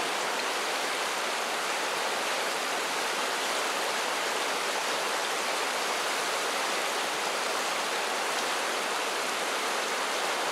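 Steady rush of a shallow, fast-flowing upland river breaking around boulders in rocky pocket water.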